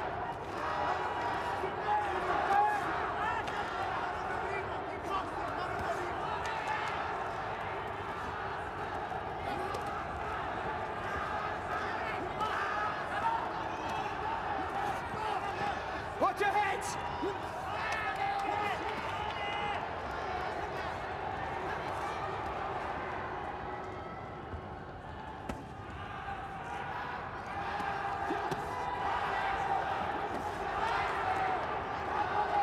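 Live arena sound of a boxing bout: a steady hum of crowd voices with shouts, and scattered dull thuds of gloved punches landing and feet on the ring canvas.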